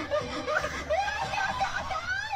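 A person laughing softly, in short broken-up fragments.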